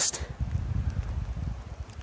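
Light wind buffeting the microphone: a steady low rumble with faint outdoor hiss.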